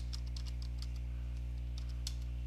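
Computer keyboard being typed on, a quick run of keystrokes, over a steady low electrical hum.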